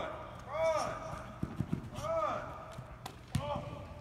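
Voices calling out in a large indoor hall, four calls that rise and fall in pitch, with a few short, dull thumps of feet or the football on the turf in between.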